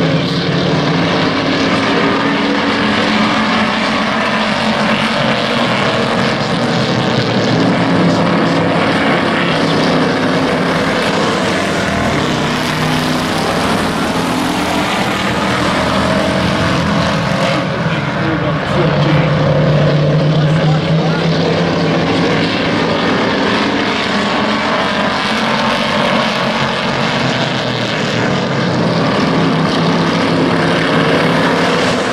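A pack of hobby stock race cars running laps, their engines a loud continuous drone that swells and shifts in pitch as the field goes past.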